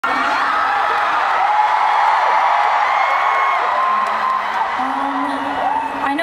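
Large crowd of fans screaming and cheering: many high-pitched voices overlapping and rising and falling in pitch.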